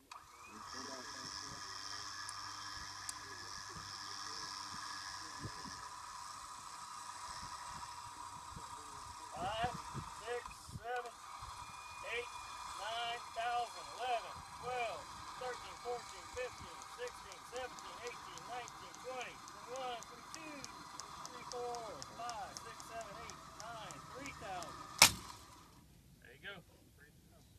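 A winch runs steadily, hauling a rope test rig under load. From about a third of the way in, short squeaks repeat about twice a second. A single sharp crack near the end is the loudest sound.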